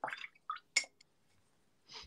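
A few short, faint wet clicks and drips from watercolour painting.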